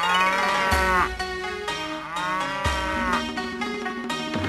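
Cartoon cattle mooing: two long moos, each about a second, one after the other, over light background music.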